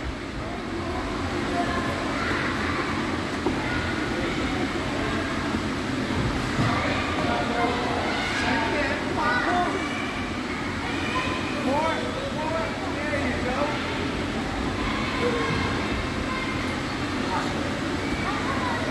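Indistinct, high-pitched voices calling here and there over a steady low rumble of background noise; no clear words.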